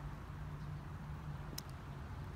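Steady low background rumble of a residential street, with a faint continuous hum, and one short click about one and a half seconds in.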